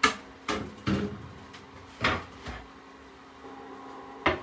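About five sharp knocks and clunks in the first two and a half seconds as a wooden cutting board is handled and set down on a kitchen countertop.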